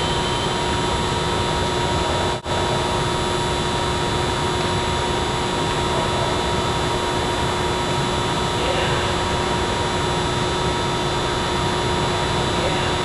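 Steady loud rushing noise with constant humming tones, briefly cutting out about two and a half seconds in; no ball strikes stand out.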